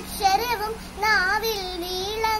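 A young girl singing a Malayalam devotional song solo, in two drawn-out phrases whose pitch wavers and bends.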